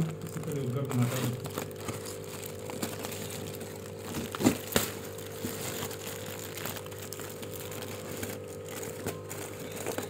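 Crumpled foil crinkling and crackling as hands pull it apart, with a sharp, louder crackle about four and a half seconds in. A steady low hum runs underneath.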